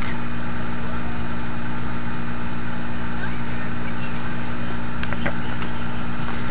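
Steady, unchanging background hum and drone, like room machinery running, with a couple of faint clicks near the end from trading cards being handled.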